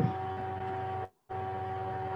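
A steady electrical hum with two constant tones. It cuts out to total silence for a moment a little after a second in, then returns unchanged.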